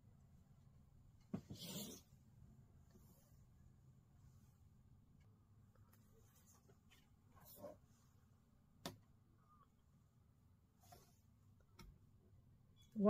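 Near silence with a few soft handling sounds on a cutting mat: a short rustle about a second in, then a few light taps and clicks later on as quilting fabric is smoothed and a long acrylic quilting ruler is set down over it.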